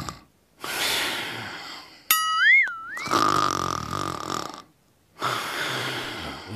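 Cartoon snoring sound effect: a series of rasping snore breaths with short pauses between them, and a wavering whistle about two seconds in.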